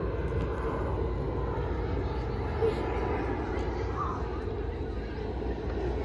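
Steady low outdoor background rumble, with faint distant voices now and then.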